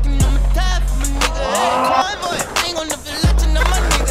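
Hip hop beat with deep sub-bass and regular hi-hats. The bass drops out for a little under two seconds in the middle, and a skateboard's wheels are heard rolling and scraping on a concrete ramp.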